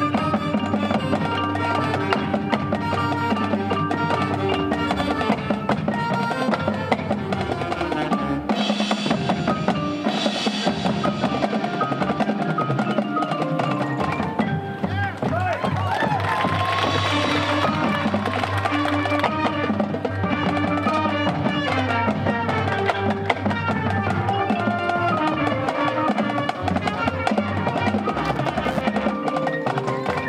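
High school marching band playing its field show music, winds with drums and front-ensemble percussion, steady and loud throughout.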